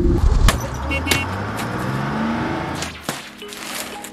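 Outdoor street noise with a vehicle engine running and several sharp clicks. About three seconds in it cuts to a quieter room.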